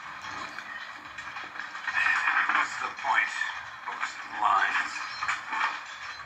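A film soundtrack playing through a laptop's small speakers and picked up in the room: thin, tinny voices and sound from the movie, with no bass.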